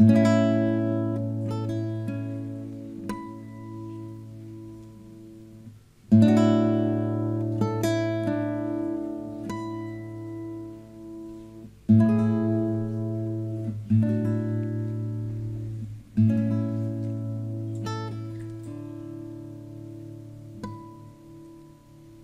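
Solo acoustic guitar playing a slow, fingerpicked instrumental passage. Chords are struck at the start and again about six, twelve, fourteen and sixteen seconds in, each left to ring and die away, with single picked notes over a held bass note.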